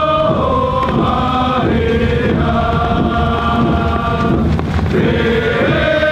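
A group of voices singing a chant in long, held notes that step from pitch to pitch, over a steady low rumble.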